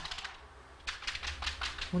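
Quick run of hand claps, about seven a second, starting about a second in after a moment of quiet.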